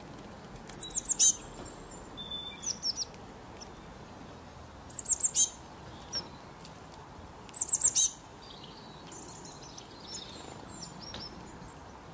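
A small songbird calling in three bursts, each a quick run of about four high, falling chirps, with a few softer high calls between them, over a faint steady background hiss.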